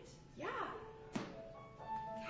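Swooping rising-and-falling vocal sound effects, like something flying through the air, then a sharp thunk just over a second in, followed by held musical notes coming in one after another.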